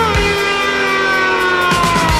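Rock music, an instrumental passage with no singing: a held lead note slides slowly downward in pitch over drums and bass, and a heavier low part comes in near the end.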